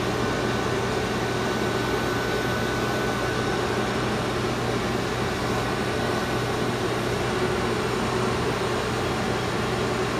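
Robot vacuum-mops running their suction fans and drive motors in a steady whir as they start a cleaning run.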